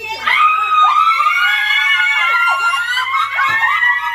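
Several women shrieking and squealing together in high, held, overlapping cries for about three seconds, with a short knock near the end.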